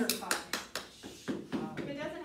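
Several sharp slaps of hands against bodies in quick succession, mixed with voices laughing and talking.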